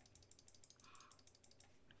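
Near silence: room tone with faint computer keyboard clicks.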